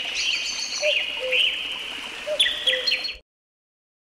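Birds chirping and calling over a steady high hiss, with short repeated lower notes among the chirps; the sound cuts off suddenly a little over three seconds in.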